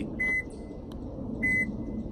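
Subaru Crosstrek's lock-confirmation beep sounding twice, two short high beeps about a second apart, answering the lock button on the key fob: the car is receiving the fob's signal.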